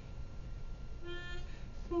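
Low room hum, then about a second in one brief held musical note, the starting pitch for the chanted doxology. The chant that follows begins on the same pitch.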